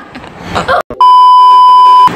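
A loud, steady one-pitch bleep tone, the kind dubbed in by an editor to censor, starting about halfway in and holding for about a second. Before it there are faint voice sounds and a moment of sudden silence.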